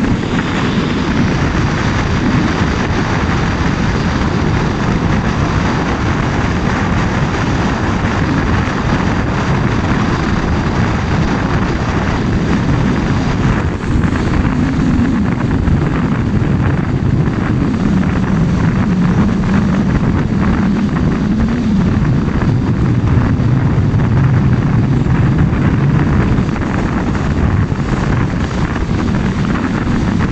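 Steady engine and road noise of a vehicle driving along a road, the engine's low note rising and falling a little as the speed changes in the second half.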